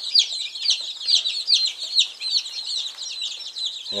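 A brooder of about eighty two-day-old chicks peeping all together: many high, short cheeps, each falling in pitch, overlapping without a break.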